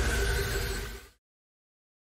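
Outro sound effect: a dense rushing hiss over a low rumble with a few faint held tones, fading out about a second in and cutting to dead silence.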